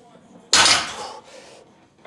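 A 160 kg barbell loaded with bumper plates is set down on the floor between deadlift reps. One sharp impact about half a second in is followed by a metallic rattle of plates and collars that dies away within about a second.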